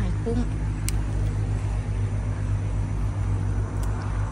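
A steady low rumble in the background, even in level throughout, with a single sharp click about a second in.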